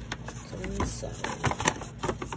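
Handling noise: a run of light clicks and knocks as small objects are handled and put into a bag, over a steady low hum.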